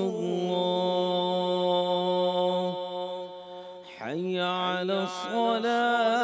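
A man's voice reciting the adhan, the Islamic call to prayer, in long melismatic notes. One phrase is held on a steady pitch for nearly three seconds, and a new phrase begins with a sliding pitch about four seconds in.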